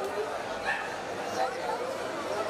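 Several people talking at once around the couple, with a brief louder exclamation about one and a half seconds in.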